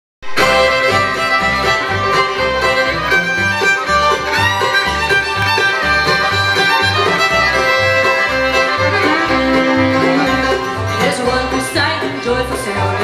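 Live bluegrass band playing an upbeat instrumental passage: bowed fiddle over banjo, acoustic guitar, resonator guitar and mandolin, with an upright bass walking about two notes a second.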